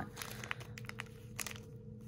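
Clear plastic bag crinkling in short, scattered rustles as hands handle a packaged wax melt clamshell, over a faint steady hum.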